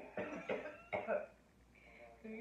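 A woman coughing, three quick coughs in the first second.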